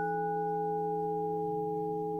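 Meditation background music: a bell-like tone, struck just before, keeps ringing and slowly fades over several steady low drone tones.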